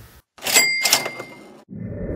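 Cash register "ka-ching" sound effect: two quick metallic strikes about half a second in, then a bell tone that rings on and fades over the next second. A low sound comes in near the end.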